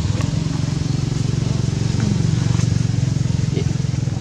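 A motor engine running steadily, a low drone that grows a little louder toward the middle.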